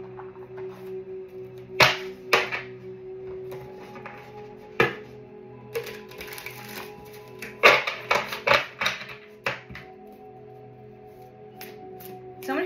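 A deck of tarot cards being shuffled by hand: sharp snapping and clattering of cards, in clusters about two seconds in and again around eight seconds in. Soft background music with a steady held tone runs underneath.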